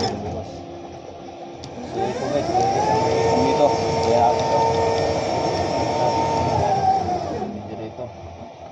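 Electric warehouse lift truck's hydraulic pump motor whining: it spins up about two seconds in, holds a steady pitch for around five seconds while the load is lifted, and winds down near the end.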